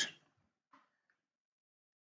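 Near silence, with the tail of a spoken word trailing off at the very start and one very faint, short sound under a second in.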